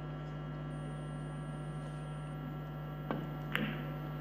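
A steady electrical hum runs under the quiet hall. Near the end come two sharp clicks about half a second apart: a cue tip striking the cue ball on a three-cushion carom table, then a ball contact as the shot plays.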